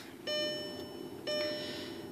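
Volkswagen Jetta's dashboard warning chime sounding with the ignition switched on: a single pitched ding that fades, repeating about once a second, twice here.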